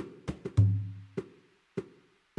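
Sparse percussion opening a music track: a loose pattern of sharp, dry knocks, with one deep drum hit about half a second in whose low boom fades away over the next second.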